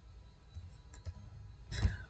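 A few faint, separate keystroke clicks on a computer keyboard as digits are typed.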